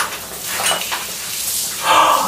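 A man gasps sharply near the end, over a steady hiss with a click at the start and a few faint clatters.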